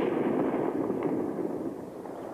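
The rolling echo of a ceremonial rifle volley from a military honor guard, fading away over about two seconds.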